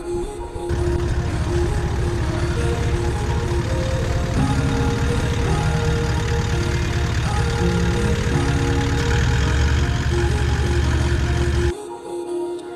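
Toyota Land Cruiser 79 Series V8 diesel engine running steadily, heard under background music, from about a second in until it cuts off just before the end.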